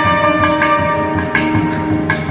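Two nagaswarams, South Indian double-reed pipes, playing held notes together over thavil drum strokes in Carnatic temple-style music.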